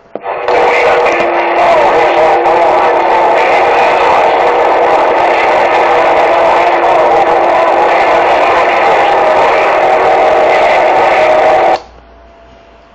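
CB radio receiving a strong, loud transmission: a steady hiss with several held tones that starts abruptly and cuts off suddenly near the end, as a station keys up and then unkeys.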